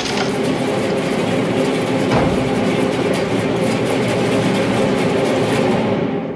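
A heavy tracked snow vehicle's engine running steadily as it approaches, with a single knock about two seconds in.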